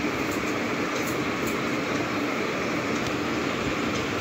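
Steady background noise, an even rumble and hiss, with a few faint clicks.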